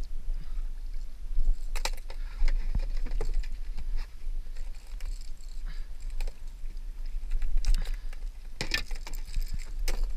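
Water sloshing around a plastic fishing kayak over a steady rumble of wind on the camera microphone, with a few short knocks and clatters of gear against the hull, two bunches of them about two seconds in and near the end.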